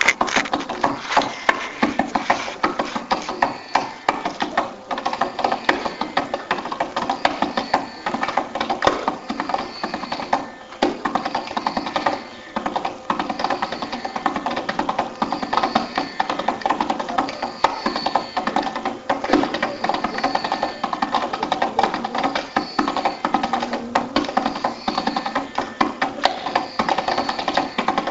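Carnatic concert music carried by rapid, dense hand-drum strokes over a steady drone, the percussion playing throughout.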